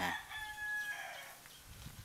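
A rooster crowing, its long held note ending about a second in.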